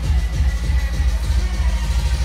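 Electronic dance music from a live DJ set played loud through a stage PA system, with a steady, pulsing bass line.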